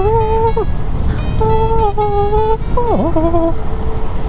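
Wind rumbling on the handlebar camera's microphone on the moving scooter, under a melody of long held high notes that glide from pitch to pitch, with a swoop down and back up about three seconds in.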